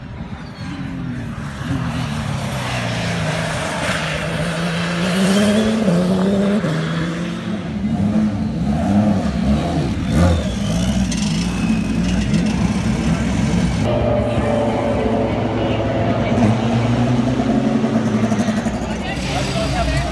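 Race car engines: a car passing at speed on the track, its engine note rising and falling, then engines running with people talking nearby.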